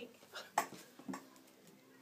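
A few brief soft puffs of breath as a small child blows at birthday candles, among quiet room sound.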